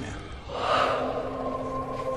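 A short, sharp breath like a gasp about half a second in, then a steady drone of several held tones.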